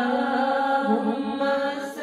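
A woman's solo voice singing a naat, holding long notes that bend slowly in pitch; the phrase breaks off near the end.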